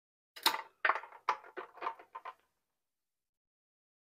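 Glass quart canning jars knocking and clinking against each other and the aluminium pressure canner as a jar is set down inside, about seven knocks in two seconds, the first the loudest.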